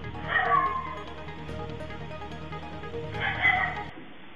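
A steady background music bed, with two short animal cries over it: one about a third of a second in and one near the end.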